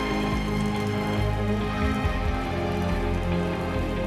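Steady patter of heavy falling water, like rain, under a film score of long held tones.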